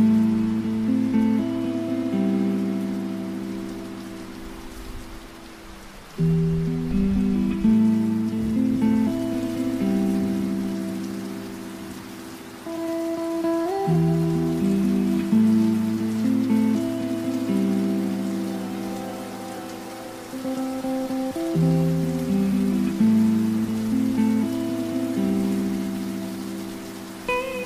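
Background music: slow, sustained chords in a phrase that repeats about every seven to eight seconds, each phrase starting loud and fading away.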